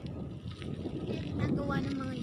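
Wind buffeting the microphone of a camera carried on a moving bicycle: a steady low rumble. A voice joins in the second half.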